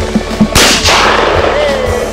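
A single shotgun shot about half a second in, loud and sharp, with a long ringing tail, over rock theme music.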